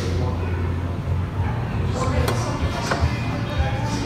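Taproom ambience: background voices and music over a steady low hum, with a couple of sharp clicks between two and three seconds in as a small glass taster is set back down on the flight tray.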